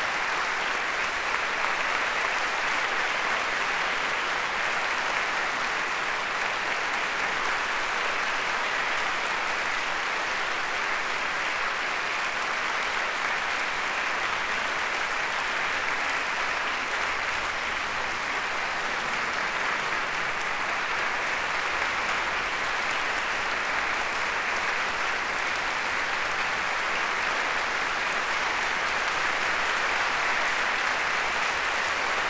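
Steady, sustained applause from a concert hall audience.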